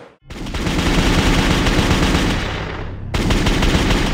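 Rapid automatic gunfire sound effect in two long bursts, with a brief break about three seconds in.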